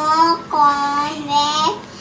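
A young girl's voice spelling out letters one at a time, each letter drawn out in a sing-song tone.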